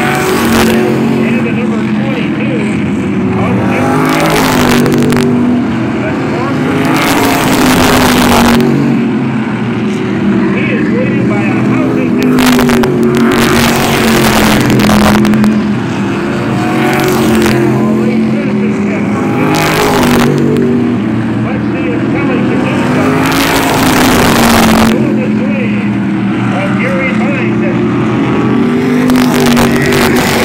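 A field of modified race cars running laps of a short oval, the engine notes rising and falling as they go through the turns and down the straights. Loud rushes come every few seconds as cars pass close by.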